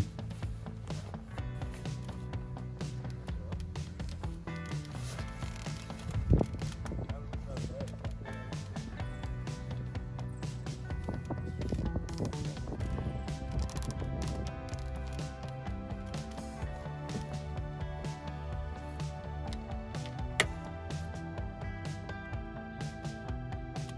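Background music with sustained melodic notes, with a single brief knock about six seconds in.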